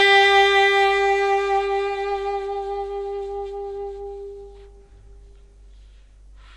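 Alto saxophone holding one long note in a live jazz performance, the tone slowly dying away and stopping about five and a half seconds in.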